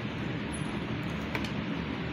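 Steady background hiss and hum, with one faint click about one and a half seconds in.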